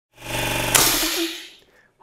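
A brief steady motor-like hum, joined about three quarters of a second in by a sudden loud hiss that fades away within the next second.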